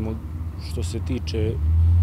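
A motor vehicle's low engine rumble that grows louder near the end, under a man's speech.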